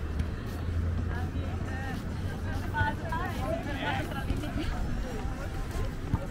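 Voices of nearby passers-by talking, over a low steady hum that is strongest in the first two seconds.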